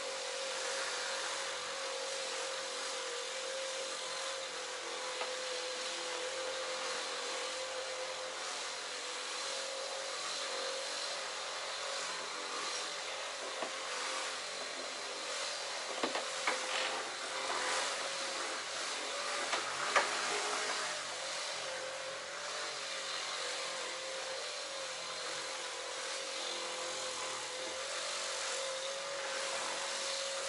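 Small handheld electric buffer running steadily with a slightly wavering whine, its pad rubbing over a semi truck's windshield to work in the first coat of a glass coating. A couple of light knocks come past the middle.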